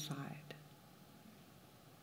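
A woman's soft, quiet voice trailing off at the end of a spoken phrase in the first moment, then near silence with faint room tone.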